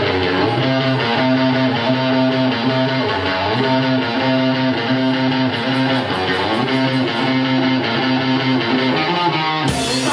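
Electric guitar playing held chords through an amplifier, changing about once a second. Just before the end the rest of the band, with drums and cymbals, comes in and the sound grows fuller and brighter.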